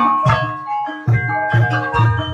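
Javanese gamelan playing the ebeg accompaniment: ringing metallophone tones over a steady low drum beat. It thins out briefly about halfway through, then comes back in.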